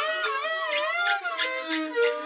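Experimental lo-fi instrumental music: a wavering pitched melody sliding up and down, over scattered clicks.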